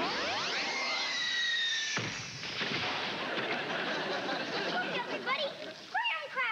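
A TV magic sound effect for a wish coming true: a shimmering run of fast rising sweeps with two held high tones. It ends in a sudden hit about two seconds in as the crate appears, then gives way to a dense noisy wash with voices near the end.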